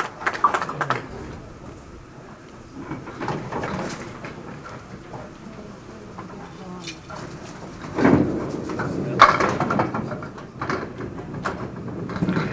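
Low chatter of spectators in a candlepin bowling alley. About eight seconds in a candlepin ball is delivered onto the wooden lane, and a sharp clatter of pins follows about a second later, with a few smaller knocks after it.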